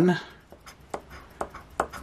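The edge of a coin scraping the scratch-off coating of a lottery ticket in a few short, sharp strokes about half a second apart. The coating is hard and thick, like concrete, and the coin struggles to clear it.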